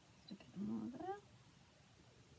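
One short vocal call rising in pitch, about half a second long, about half a second in.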